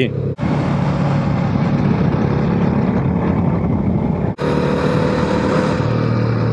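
Motorcycle engine running steadily at road speed with wind rushing over the microphone. The sound drops out briefly twice, about a third of a second in and a little after four seconds, and picks up again with a slightly different tone each time.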